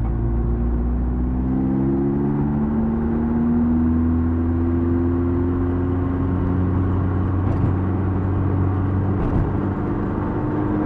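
Classic Mini's A-series engine heard from inside the cabin, pulling away with its pitch rising over the first few seconds, then running steadily at speed.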